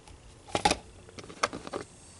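A few light clicks and taps of a plastic cup holder trim piece being handled, the loudest pair a little over half a second in and another about a second and a half in.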